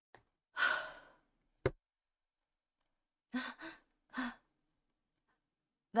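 A woman's breathy sigh that fades over about half a second, then three short, breathy voiced sounds about two seconds later.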